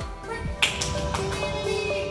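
Background music with steady held notes, and one sharp tap a little over half a second in.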